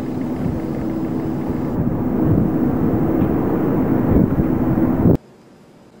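Steady outdoor rumble with a faint low hum, cutting off suddenly about five seconds in.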